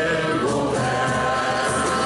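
A large crowd of amateur singers singing a Catalan song together, with many voices blended as one choir.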